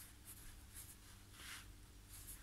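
Near silence with a few faint, short rustles of a card picture mount being handled.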